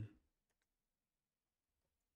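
Near silence: quiet room tone with a few faint clicks, a pair about half a second in and one near the end.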